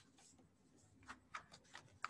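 Near silence with a few faint, short clicks about a second in.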